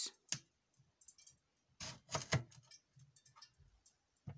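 Kitchen knife cutting through the hard rind of a passion fruit on a wooden cutting board: a series of sharp clicks and taps, loudest in a cluster about two seconds in.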